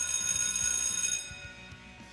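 Electric bell ringing loudly and cutting off abruptly about a second in, over background music.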